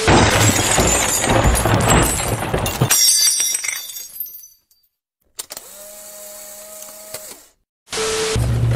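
Glass shattering and debris crashing, loud for about three seconds and then dying away in scattered crackles. After a brief silence comes a faint steady hum.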